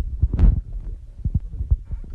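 Irregular low thumps and rumble from a phone being handled, its microphone knocked and rubbed as the camera is moved in close; the loudest knock comes about half a second in.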